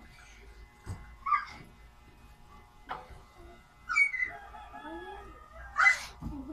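Ceramic plates clinking and knocking as they are handled at a sink and dish rack: about five separate clacks, the sharpest a little over a second in and just before the end.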